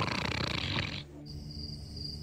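A man's hoarse, rasping vocal noise without words, from an actor in drag throwing her head about, cut off abruptly about a second in. It gives way to a quieter night bed: a steady high chirp pulsing a few times a second, like night insects, over a low hum.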